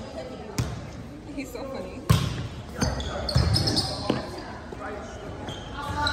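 Sharp knocks of a volleyball in play on a hardwood gym floor, three or four spaced a second or two apart, with players' voices calling out between them.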